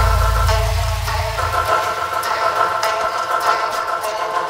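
Electronic workout music: a held synth chord over a deep sub-bass note that fades out about a second and a half in, with light percussion ticks over it.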